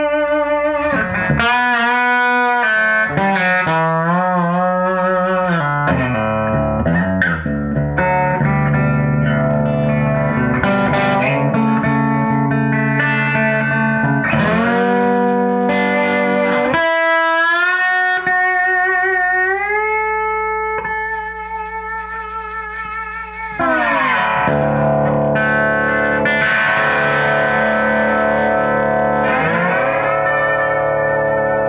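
1950s Gibson Les Paul Junior electric guitar played with a slide through an amplifier: sustained notes gliding and wavering in pitch, with a long slide upward about two thirds through, a softer passage, then a louder ringing chord near the end. The guitar's tuning is really bad and its action crazy high, about half an inch at the 12th fret.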